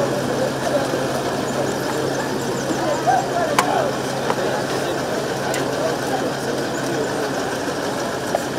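A vehicle engine idling steadily close by, under the chatter of a crowd, with a couple of brief sharp clicks.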